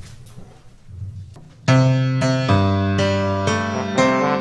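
Quiet room noise, then under two seconds in a piano starts playing loud struck chords, about two a second: the piano introduction to a choral piece.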